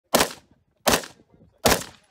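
Three rifle shots, about three-quarters of a second apart, each a sharp crack with a short fading tail.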